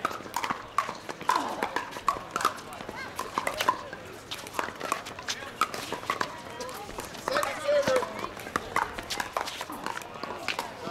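Pickleball paddles hitting the hollow plastic ball in a rally, a run of sharp pops at an uneven pace, mixed with more paddle pops from other courts.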